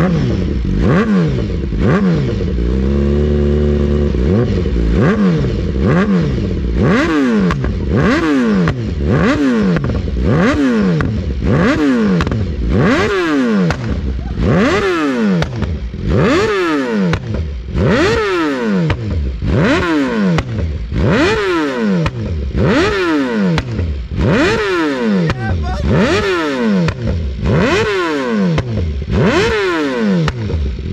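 BMW S 1000RR inline-four engine being revved in quick throttle blips, about one a second, each shooting up in pitch and dropping back. It holds a steady idle for a moment about two to four seconds in.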